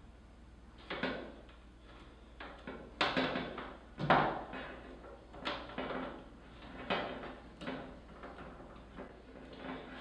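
Plastic MC4 solar connectors being handled and pushed together into a branch connector: several irregular clicks and knocks, the loudest about three and four seconds in.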